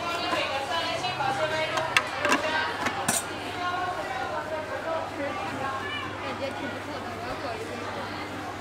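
Background chatter of several voices in a busy public space, with a few sharp clinks about two to three seconds in and a steady low hum beneath.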